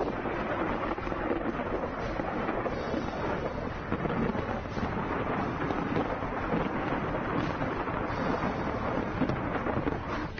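A steady, rumbling din of distant explosions and weapons fire from a live-fire military exercise, many small cracks and booms running together rather than separate blasts.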